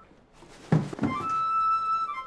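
Soundtrack sound-effect sting: a sharp thump about three-quarters of a second in, a second thump just after, then a held, ringing chime-like tone that fades near the end.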